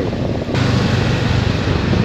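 Motorcycle on the move, heard from a camera mounted on the bike: a steady low engine hum under wind rushing over the microphone. About half a second in, the sound jumps suddenly to a louder, brighter rush of wind.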